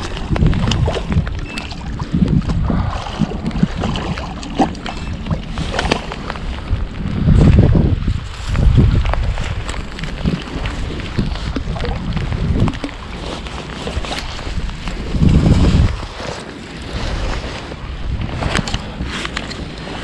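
Wind buffeting the microphone, with rain and the splashing of a small common carp being played in and netted at the bank. It comes in heavy low gusts, twice loudest in the middle.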